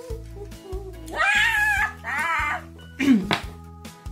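Two high, wavering meow-like calls, a long one about a second in and a shorter one right after, then a brief falling cry near the end, over background music.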